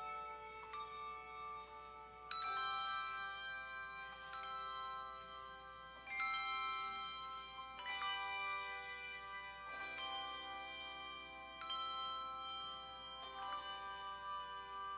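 Handbell choir ringing a slow piece, a new chord of bells struck about every two seconds, each left ringing on under the next.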